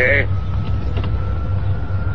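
Steady low rumble of a car's engine and road noise, heard inside the car's cabin. A faint high tone holds above it, rising slightly.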